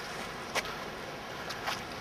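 Steady outdoor background noise at a rocky river gorge, with a sharp faint click about half a second in and two fainter clicks later.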